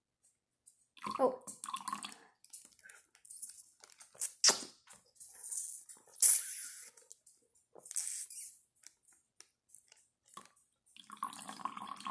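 Orange juice leaking from the snipped corner of a plastic zip-top bag and being slurped from it: an irregular series of short wet sucking, dripping and splashing noises.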